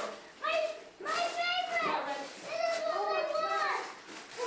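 A young child's high-pitched voice, vocalizing in long wordless calls that rise and fall, with other voices around it.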